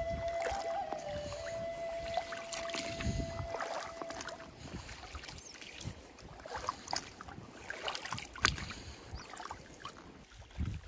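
Rubber boots wading through a shallow, grassy river, with irregular sloshing and splashing at each step. A held musical note fades out in the first half.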